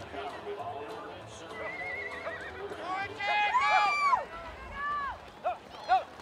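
A horse whinnying: a short wavering call about two seconds in, then a longer run of neighs that rise and fall in pitch, and a few short calls near the end.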